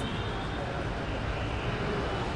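Steady low rumble of background traffic noise, with no sharp sounds.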